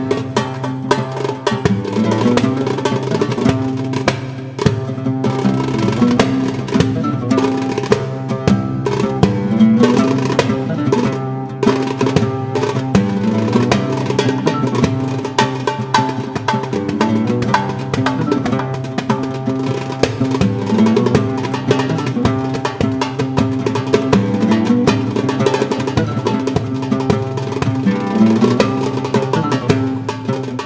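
Goblet drum (darbuka) played by hand in a fast, dense rhythm of strokes and rolls, over a pitched melody line that keeps sounding throughout.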